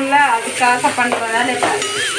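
Women's voices talking and laughing over onions and tomatoes sizzling in an aluminium kadai as they are stirred with a wooden spatula.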